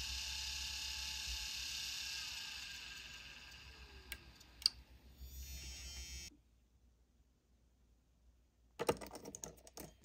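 The platters of an opened Conner CP2045 2.5-inch hard drive spin with a steady whine and hiss, then wind down over a few seconds with a falling tone and a couple of sharp clicks. The heads are freed, but the drive seems dead. Near the end, small clicks and rattles come from a screwdriver working on a drive's circuit board.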